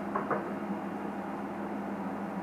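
Two brief light clicks from hands handling a small power-supply cord, about a quarter of a second in, over a steady low hum.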